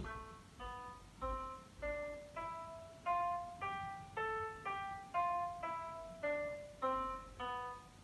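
Sampled piano notes played back by MuseScore notation software, one sounding as each note is entered: an A melodic minor scale, rising an octave with raised sixth and seventh and falling back with them natural. About one note every 0.6 s, climbing in pitch through the first half and descending in the second.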